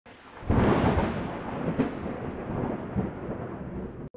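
A thunder-like crash about half a second in, then a rolling rumble with a second sharp crack near two seconds, slowly dying away.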